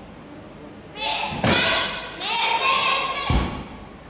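A gymnast falling off the balance beam: a sharp knock about one and a half seconds in, then a heavy low thud near the end as she lands on the floor mat. Voices call out in the hall in between.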